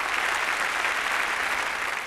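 Audience applauding: steady clapping from a seated crowd in a hall, beginning to fade near the end.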